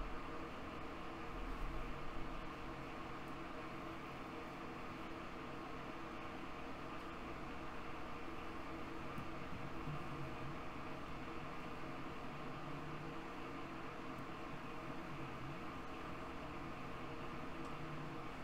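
Steady background hiss with a faint low hum, unchanged throughout: the recording's room tone while no one speaks.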